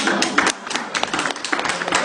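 Audience applauding: a dense, irregular patter of hand claps, with some laughter.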